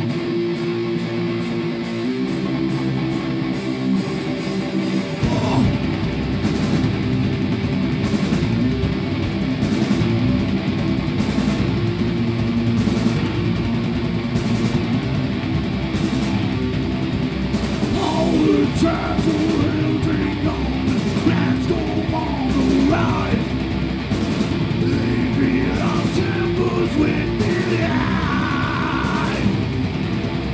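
Live heavy metal trio playing loud: distorted electric guitar, electric bass and drum kit. For the first five seconds the guitar plays with only cymbals, then the bass and full drums come in heavily.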